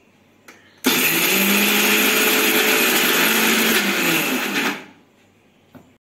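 Electric mixer grinder switched on with a click and running steadily for about four seconds, grinding soaked chana dal in its small steel jar, then winding down after it is switched off.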